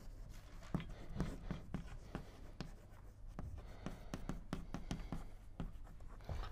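Chalk writing on a chalkboard: a run of irregular taps and short scratches as the chalk strokes across the board.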